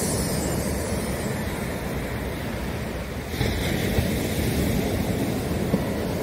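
Ocean surf breaking and washing up a sandy beach, with wind buffeting the microphone; the hiss of the surf grows a little louder a little past halfway.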